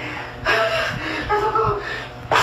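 A man gasping in panic, with breathy gasps and short pitched cries of 'ai, ai' between them.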